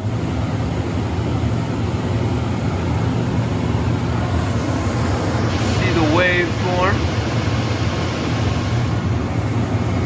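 Aldonex 400-amp air-cooled rectifier power supply coming on at the start and then running steadily: a low electrical hum with the even rush of its cooling fan.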